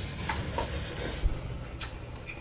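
Instant ramen noodles slurped from a cup for about the first second, then a few light clicks of a fork in the paper noodle cup, one sharper near the end.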